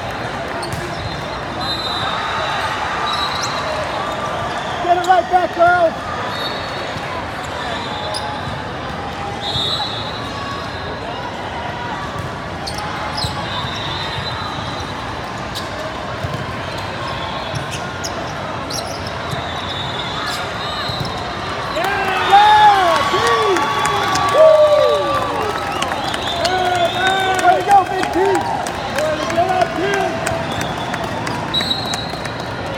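Steady hubbub of a large hall full of volleyball courts, with scattered sharp smacks of volleyballs being hit and bounced. Short bursts of shouting from players break out about five seconds in and again over most of the last eight seconds.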